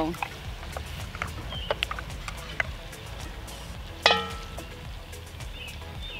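Campfire under a cast-iron Dutch oven: a low rumble with scattered small crackles and faint chirps. About four seconds in there is a single sharp clink that rings briefly.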